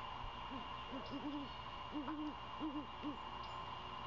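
Great horned owl hooting: two short series of deep hoots, the second beginning about two seconds in.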